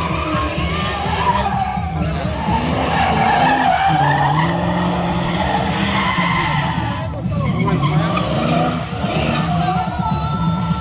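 BMW E39's V8 engine held at high revs while the spinning rear tyres squeal and skid through a smoky burnout doughnut. The engine pitch rises about four seconds in.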